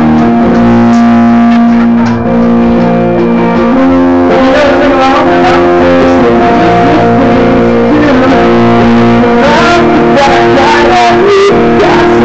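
A live rock band playing loudly, led by electric guitar with bass, with regular sharp hits joining about four seconds in.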